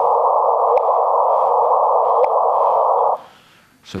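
LIGO photodiode signal of two black holes merging, played through a loudspeaker with its frequency shifted up 400 Hz into the audio band. A steady band of detector hiss carries a short rising chirp, the waves of the merger, about three-quarters of a second in and again about a second and a half later. The hiss cuts off just after three seconds.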